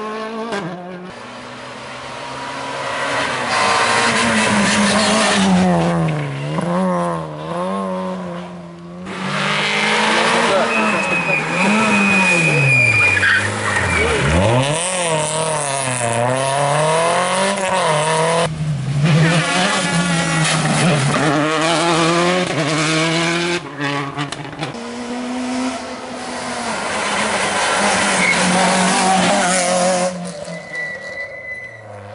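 Rally cars driving past one after another on a tarmac stage, their engines revving hard and dropping back through gear changes, with tyre squeal.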